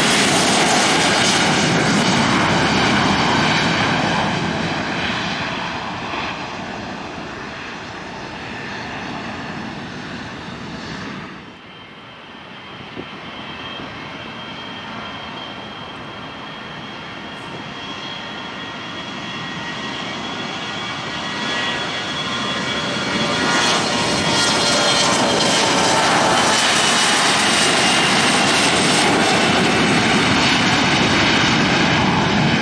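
Jet airliner engines on the runway. First a Boeing 737-700's turbofans run at high power and fade as the jet moves away. Then, after a break, a Bombardier CRJ-900ER's twin GE CF34 turbofans grow loud with a whine that shifts in pitch, typical of spooling up for the takeoff roll.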